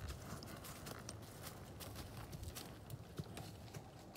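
Hoofbeats of a ridden horse on bare dirt: an irregular run of hoof strikes as she circles and moves off toward the water.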